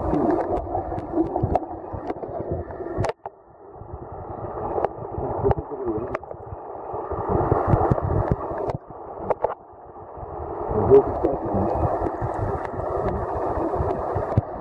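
Muffled water noise heard through a camera held underwater, with scattered small clicks and ticks. The sound drops away sharply about three seconds in and again just before nine seconds, then builds back up.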